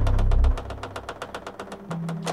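Rapid mechanical ticking, about ten sharp clicks a second, spacing out slightly toward the end. A low rumble dies away in the first half-second.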